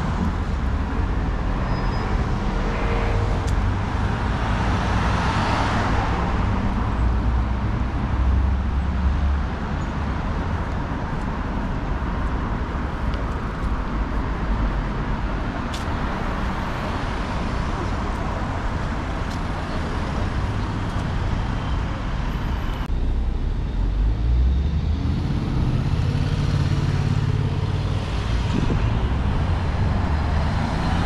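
Road traffic on a town street: cars and a city bus driving past, one vehicle passing close about five seconds in. The sound changes abruptly about two-thirds of the way through, then a deeper engine rumble builds as another car approaches near the end.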